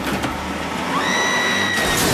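A car engine running hard with a low rumble, a high steady screech held for under a second about halfway through, and the start of a loud crash of impact and breaking just at the end as the car hits.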